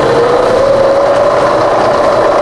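Bridgeport milling machine running with a hole saw spinning free in the spindle, its whine rising in pitch through the first second or so as the spindle speed is turned up from about 50 toward 100 RPM, then holding steady. The hum of the rotary phase converter that powers it runs underneath.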